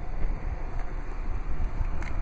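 Low, steady wind rumble on the microphone, mixed with handling noise from a handheld camera being moved.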